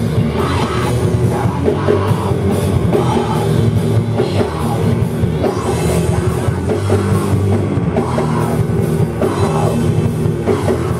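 Sludge metal band playing live: loud distorted guitar and bass over a drum kit, a dense wall of sound that does not let up.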